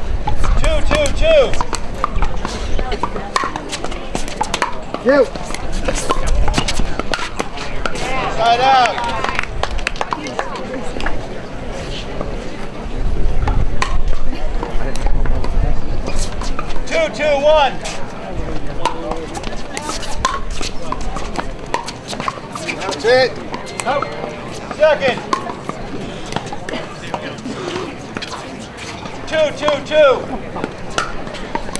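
Pickleball paddles popping against a plastic ball during a doubles rally, the sharp pops scattered through, with spectators' voices in short bouts and low rumble on the microphone at times.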